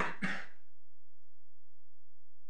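A person clears their throat with two quick coughs in the first half second, then only faint room tone.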